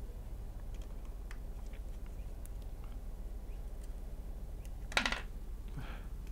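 Small taps and clicks of a metal hand tool on an open iPhone 6's internals and connectors, with a louder short click about five seconds in as the display assembly is handled and brought down onto the frame. A steady low hum runs underneath.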